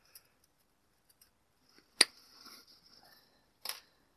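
Side cutters snipping through a piece of heavy-gauge broom binding wire: one sharp snap about halfway through, then a second, quieter click near the end, with faint rustling of the broom straw in between.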